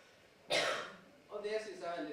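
A woman reading a speech aloud: a brief pause, a short sharp noise about half a second in, then her voice resumes.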